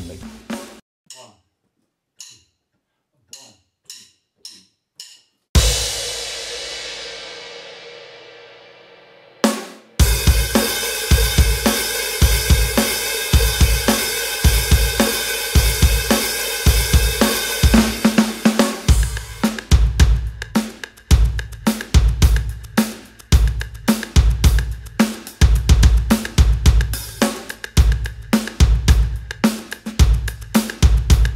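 Indie rock drum track at 108 bpm with TR-808 percussion. It opens with a few sparse light clicks, then a single cymbal crash rings out for about four seconds. From about ten seconds in a full beat of kick, snare and washing cymbals drives on steadily, and the groove changes to crisper, more separated hits about nineteen seconds in.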